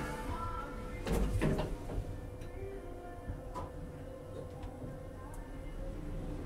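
Schindler lift car doors sliding shut, ending in a few clunks about a second in. The car then travels with a steady motor hum and a few faint clicks, over a low rumble of handling noise on the microphone.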